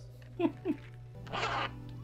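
A zipper pulled in one short rasp about one and a half seconds in, just after two brief falling vocal exclamations from a man.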